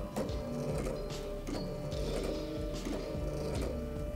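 Desktop laser engraver's stepper motors whirring as the laser head moves over the work, under background music.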